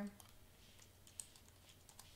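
Faint typing on a computer keyboard: a quick run of key clicks, with a sharper click a little past a second in.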